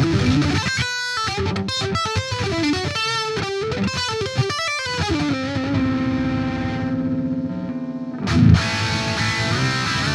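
Distorted electric guitar played through a Monomyth-modded Marshall Silver Jubilee amp. It opens with about five seconds of quick single-note lead playing, then a note is held and left ringing, and a loud low hit comes near the end before the playing goes on.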